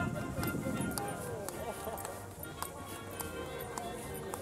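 People talking in the first second or so, with music playing in the background throughout.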